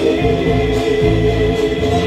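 A live band playing loud through a PA: several voices singing together over guitars and drums, with long held notes.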